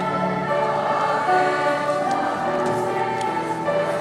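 A large youth choir singing held chords that move from note to note.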